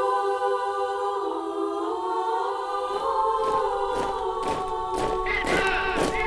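Trailer music: a choir holds long, slowly shifting chords. About halfway through, percussive hits come in, roughly two a second and closer together toward the end.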